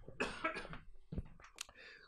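A man coughing into his hand close to a handheld microphone. The loudest cough comes in the first second, followed by a few smaller ones.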